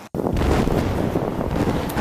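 Wind buffeting an outdoor camera microphone: a loud, even rumble that starts and stops abruptly at edit cuts.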